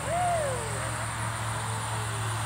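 A person's drawn-out "whoo" near the start, rising slightly and then falling in pitch over about half a second, over a low steady hum.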